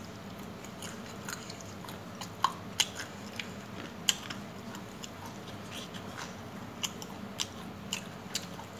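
A person biting and chewing chicken, with irregular sharp crunches and clicks, over a faint steady low hum.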